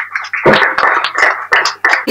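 Brief clapping from a small audience, dense and irregular, starting about half a second in and stopping just before the next speaker begins.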